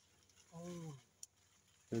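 A short voiced murmur, falling in pitch, about half a second in, followed by a single faint click.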